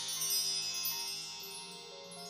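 Chime tones ringing and overlapping, with a few new notes struck about a second in and near the end, the whole slowly fading.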